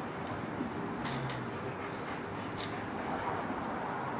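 Steady low background noise with a few faint, light clicks about a second in and again past halfway.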